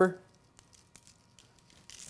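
Faint scattered ticks of salt grains sprinkled by hand onto raw strip steaks on a paper-lined sheet tray.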